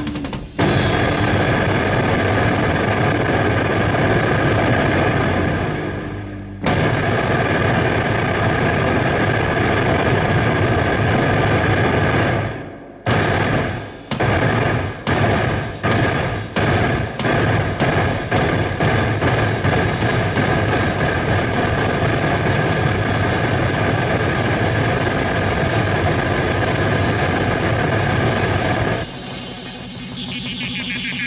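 Live instrumental rock band: drums pounding under a loud held chord. From about twelve seconds in, the sound is chopped into stop-start hits that come faster and faster, then it drops quieter near the end.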